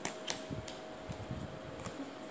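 A few light clicks and soft low taps of wax crayons being handled: one put down and another picked up from the crayon set.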